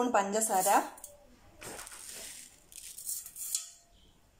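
Sugar poured from a spoon into a stainless-steel mixer jar: two short spells of hissing, rattling granules falling onto bananas and the steel, starting about one and a half seconds in.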